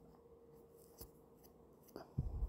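Near silence: faint room tone with a low steady hum and a small click about halfway through, then another near the end.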